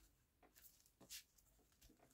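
Near silence, with a few faint, brief rustles of paper being pressed flat by hand, the clearest a little over a second in.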